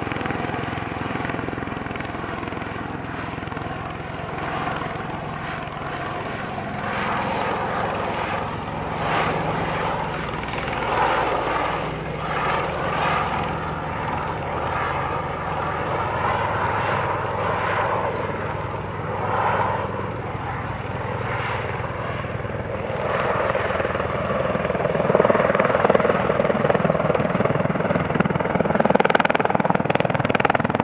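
US Marine Corps MV-22B Osprey tiltrotor flying low with its nacelles tilted up in helicopter mode: a steady, deep proprotor throb and the noise of its twin turboshaft engines, echoing, growing louder in the last few seconds.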